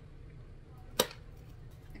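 A single sharp snap about a second in, as the glued top flap of a cardboard macaroni-and-cheese box is pried open.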